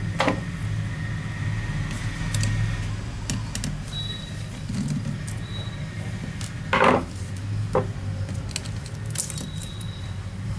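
Light clicks and knocks of a screwdriver and small metal and plastic laptop parts being handled as the CPU cooling fan and copper heatsink assembly is unscrewed and lifted out, over a steady low hum. The loudest knock comes about seven seconds in, with a smaller one just after.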